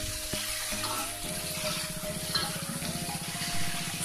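Tofu and green chilies in sweet soy sauce sizzling in a wok with a steady hiss, under soft background music with long held notes that change pitch about a second in and again near the end.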